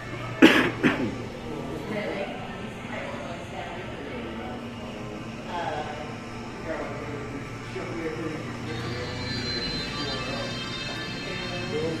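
Background music with indistinct people's voices, and two loud, sharp sounds close together about half a second in.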